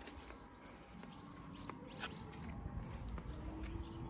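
Faint outdoor ambience: a few short, high bird chirps between about one and two seconds in, over a low rumble that grows louder in the second half.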